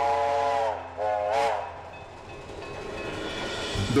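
Steam locomotive 4960's chime whistle: a long blast sounding a chord of several tones ends within the first second, followed by one short blast about a second in. After that comes the low running sound of the approaching train, growing louder.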